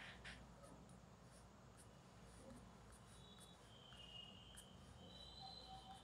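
Near silence: faint strokes of a pen on paper at the start, with a faint high steady tone in the second half.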